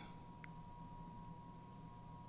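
Quiet room tone with a faint, steady high-pitched electronic tone running under it, and a tiny brief blip about half a second in.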